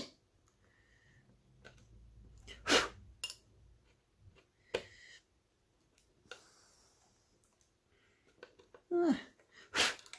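Sharp kitchen knife cutting into and snapping small pieces off the plastic end of a motherboard's PCIe x1 slot: a few scattered sharp clicks, the loudest about three seconds in.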